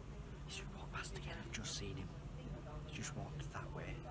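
A man whispering to himself, over a steady low hum.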